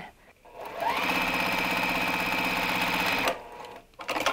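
Juki sewing machine stitching a straight seam: the motor winds up over about half a second, runs at a fast, even stitch rate for a little over two seconds, then stops.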